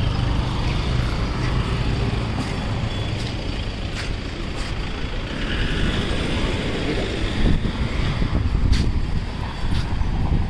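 Road traffic: motor vehicle engines running and passing as a continuous low rumble, with a steady low engine note for the first second or two and a few sharp clicks scattered through it.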